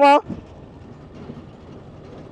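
Motorcycle riding at low speed, a steady low engine hum under road and wind noise, heard from on the bike. A short shouted word at the very start.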